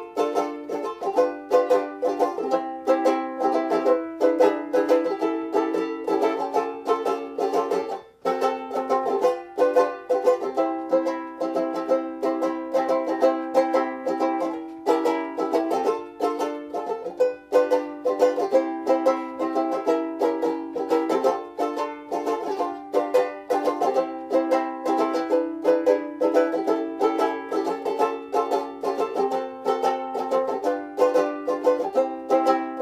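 Luna soprano banjolele with a concert-scale neck being strummed, a steady run of chords with a brief break about eight seconds in.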